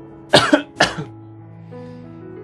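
A person coughing twice in quick succession, about half a second apart, over quieter background music with slow held notes.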